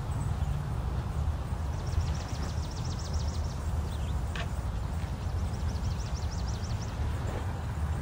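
Outdoor ambience with a steady low rumble. A bird's rapid high trill comes twice, and there is a single short click about four seconds in.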